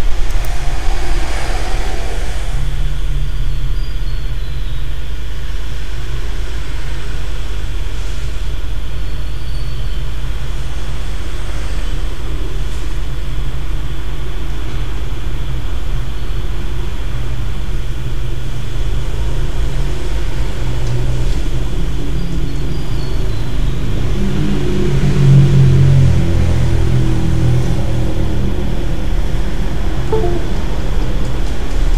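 A steady low rumble, swelling a little about 25 seconds in.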